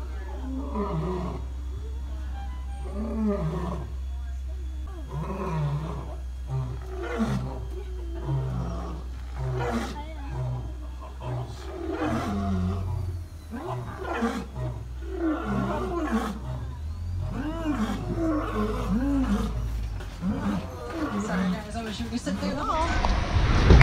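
Lion roaring: a long bout of repeated calls, each rising and falling in pitch, coming about once a second, over a steady low hum.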